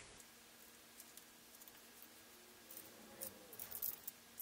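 Near silence with faint, scattered small clicks and handling noises, more frequent near the end: hands fitting a small eye bolt with a key ring into a wooden board.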